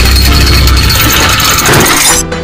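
Cinematic sound effect for an animated intro: a loud, steady, dense mechanical rumble with a deep low end.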